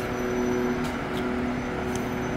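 Steady, even hum of a truck-mounted boom lift's engine running at the work site, with a couple of faint ticks about a second in.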